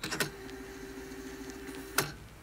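Simulated VCR transport sound effect: a click, a low steady hum with faint hiss, and a second click near the end as the deck switches from stop to play.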